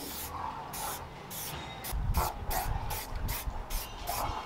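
Aerosol spray paint can sprayed through a stencil in a quick series of short hissing bursts, about a dozen in four seconds.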